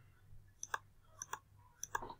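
Computer mouse button clicked several times, faint and sharp, in three quick pairs of clicks.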